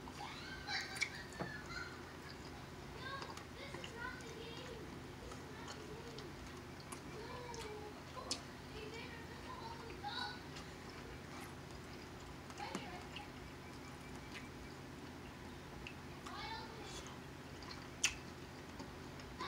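Faint voices in the background over a steady low hum, with a few sharp clicks from cracking and eating crab legs.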